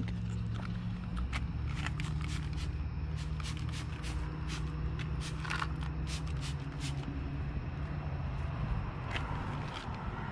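Hand trigger spray bottle of quick detailer being pumped over and over onto car paint: a rapid run of short spritzes, two or three a second, for about six seconds, with one more near the end. A steady low hum runs underneath.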